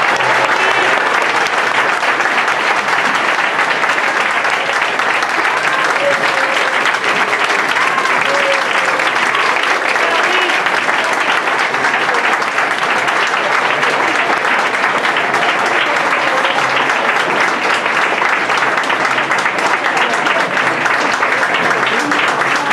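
Sustained audience applause: dense, steady clapping, with a few voices calling out over it.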